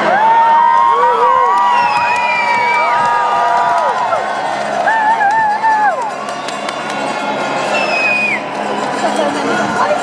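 Street crowd cheering and whooping, many voices shouting over one another with a long held high note in the first few seconds; the cheering eases off after about six seconds.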